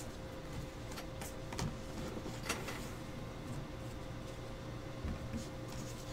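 Curved Bowman baseball cards being handled: faint, soft clicks and snaps as cards are flipped through and laid on piles, over a faint steady hum.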